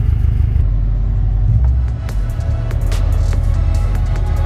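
A low, evenly pulsing rumble from the idling Subaru WRX STI's flat-four engine for the first half-second. It then gives way to background music, which gets a beat of sharp hits from about halfway in.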